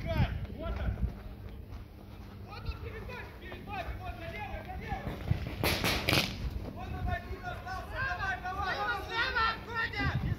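Paintball players' voices calling across the field, with two sharp pops close together about six seconds in from a paintball marker firing.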